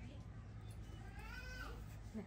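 A baby monkey gives a single high whining cry that rises in pitch and breaks off about a second and a half in.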